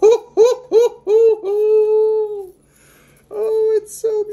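A man's voice making excited wordless exclamations: about four quick rising-and-falling "oh"s, then a long held high "ooh", and after a short pause a second shorter one near the end.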